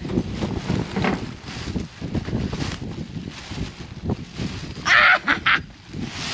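Black plastic garbage bag rustling and crinkling as gloved hands untie and open it. About five seconds in comes a short, loud sound in three quick pulses.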